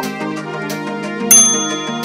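Background music with a steady beat, and about a second and a half in a bright, sudden chime that rings on while fading: the notification-bell sound effect of a subscribe-button animation.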